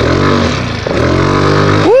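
150cc GY6 scooter engine revving hard under full throttle for a wheelie, its new clutch no longer slipping. The revs climb, ease briefly a little under a second in, then climb again, with wind rush over the microphone.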